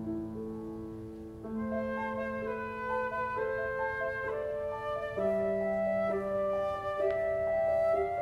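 Flute and grand piano playing a classical duet live, the flute holding long sustained notes over the piano's chords, growing louder about five seconds in.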